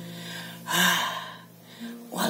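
A man's loud, gasping breath about two-thirds of a second in, short and hitching, from being out of breath after singing. Under it the last chord of a nylon-string classical guitar rings and fades away.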